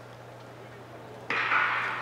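Hushed stadium with a steady low hum while sprinters wait in the blocks, then about two-thirds of the way through the starting gun goes off and crowd noise rises suddenly and stays loud.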